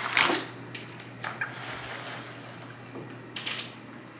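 Rustling of curtain fabric and handling noise as curtains are pushed aside: a sharp rustle right at the start, another stretch of rustling in the middle and a short one near the end, over a steady low hum.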